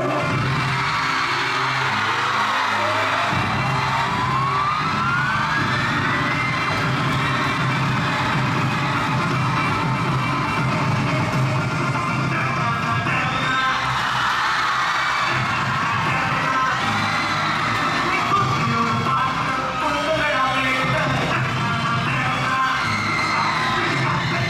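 Loud dance music playing over a hall's speakers, with a rising tone sweeping up through the first six seconds. An audience cheers and whoops over it.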